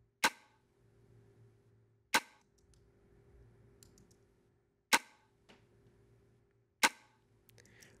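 Layered snap-and-snare drum sample played four times, about two seconds apart, through a fast-release compressor. It is heard with the attack at zero and at four milliseconds: at zero the hit is clamped flat and sounds like a toy drum from a cheap drum machine, and at four milliseconds the original punch comes back.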